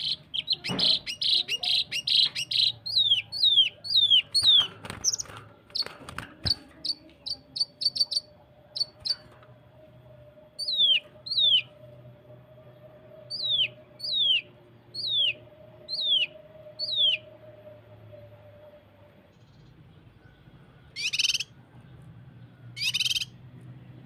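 Cucak kinoi (blue-masked leafbird) calling in close-set 'tembakan' bursts: a fast run of short, sharp downslurred whistles, then slower single and paired notes, and two harsh rasping notes near the end.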